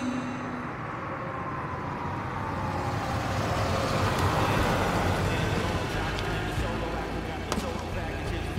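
A car driving up and pulling in on a city street: engine and tyre noise swells to a peak about four seconds in, then eases off, over a low rumble. There is a sharp click near the end.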